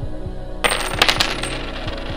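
A handful of British coins dropped onto a hard painted surface. They land in a quick clatter of several clinks about two-thirds of a second in, ring briefly, and settle within the next second.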